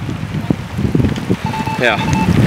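Wind buffeting the microphone with a patter of rain, uneven and rumbling. An electronic beep starts about three-quarters of the way in.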